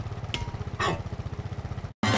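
Vehicle engine idling sound effect, a steady low rapid rumble, with two short sounds over it about a third of a second and just under a second in; it cuts off just before the end.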